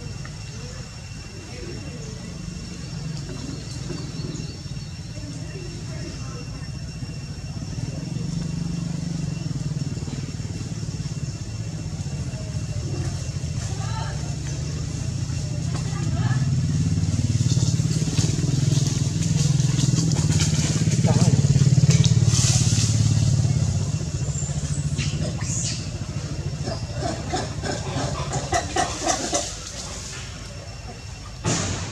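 An engine, most like a motorcycle's, running steadily; it grows louder to a peak a little past the middle and then eases off.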